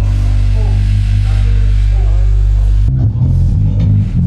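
Loud band music with heavy bass and guitar: a long held low note rings steadily, then breaks into a choppier rhythm about three seconds in. Voices talk faintly underneath.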